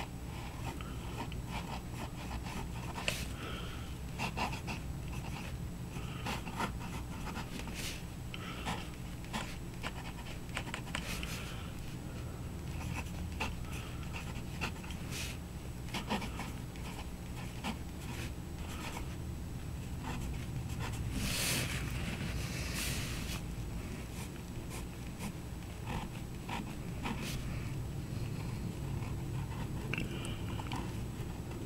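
Stainless-steel 1.1 mm stub fountain pen nib writing on paper: short irregular scratchy strokes with small ticks as the nib touches down and lifts, over a low steady hum. A brief louder rustle comes about two thirds of the way through.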